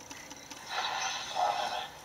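Homemade FET radio putting out a faint hiss through its audio amplifier as the tuning slug is moved in the antenna coil. The hiss swells in a little past half a second in and fades just before the end, as the receiver is tuned across the medium-wave signal.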